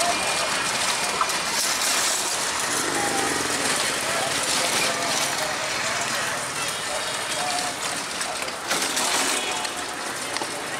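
A passenger train's rumble slowly fading as it moves away down the line, mixed with people's voices and street noise close by.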